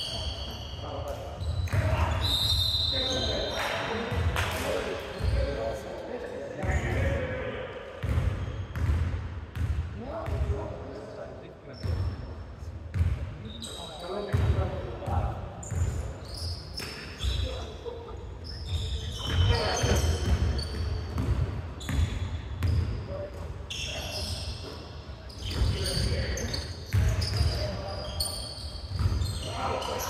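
Basketball dribbled on a hardwood gym floor, with repeated thumping bounces, sneaker squeaks and players calling out to each other, all echoing in a large sports hall.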